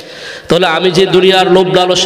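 A man's voice preaching in a drawn-out, sung chant, coming in loudly about half a second in after a brief lull, with long held notes.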